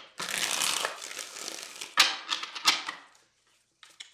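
A tarot deck being shuffled by hand: about a second of rustling cards, then two sharp card snaps about two seconds in, dying away to quiet near the end.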